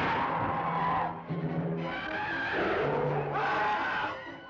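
Dramatic orchestral film-trailer music with held low notes, broken twice by loud, harsh screeching sound effects: once in the first second, and again from about two seconds in.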